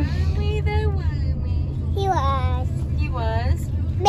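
A toddler's high voice singing in short sing-song phrases, over the steady low road rumble inside a moving car.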